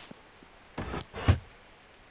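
Cartoon sound effect of a kitchen cupboard being opened and shut: a few short wooden knocks and a click, the loudest a low thud just past halfway.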